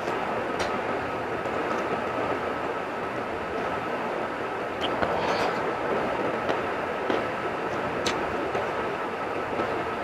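A steady rushing background noise with a faint constant whine runs throughout. Over it come a few light clicks and smacks from fingers mixing rice on a plate and from eating, with a brief busier patch about halfway through.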